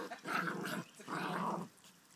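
Bolonka Zwetna dogs play-fighting and growling, in two rough growls of about half a second each.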